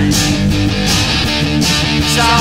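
Punk rock band playing an instrumental stretch between vocal lines: electric guitars and bass over a steady drum beat.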